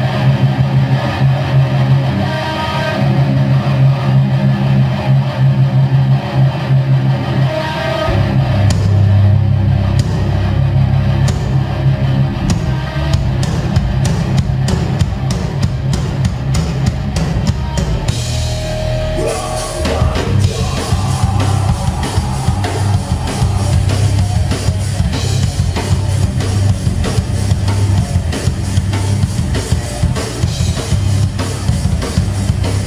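Live rock/metal band playing loud: distorted electric guitars and a drum kit. The guitars carry the opening, the drums come in heavily about eight seconds in, build with faster and faster hits, and the full band with crashing cymbals takes over a little after halfway.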